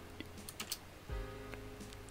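A few faint computer keyboard clicks, mostly around half a second in, over quiet background music with held notes.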